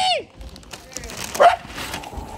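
Dog whining: a high cry that falls away just after the start, then a single short loud bark about one and a half seconds in, while it begs at a paper takeout bag of food. Paper bag rustling alongside.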